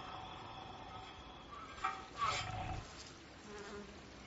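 Low, steady buzzing like a flying insect, with a short louder sound about two seconds in.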